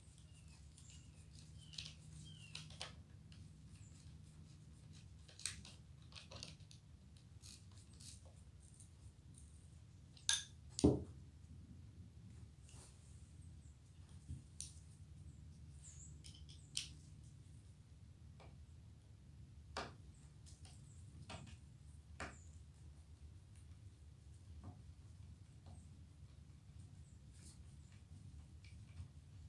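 Small steel musket lock parts and screws being handled and fitted by hand: scattered faint clicks and taps, with a sharper double knock about ten seconds in. A steady low hum runs underneath.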